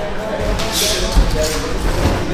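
Boxing drill: three dull thuds of gloved punches landing, with two short, sharp hissing breaths from the boxer as he throws, over faint voices.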